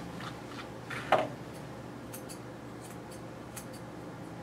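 Grooming shears snipping dog hair: a handful of short, light, irregularly spaced snips, with one slightly louder sound about a second in.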